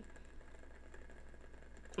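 Faint room tone with a steady low hum, in a short pause between words.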